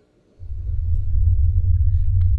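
A deep, steady low rumble, a bass drone in the film's soundtrack, starts suddenly about half a second in after near silence and holds without a break.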